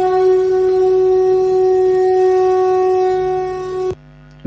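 A single long note from a blown horn, held at one steady pitch and cutting off sharply just before the end.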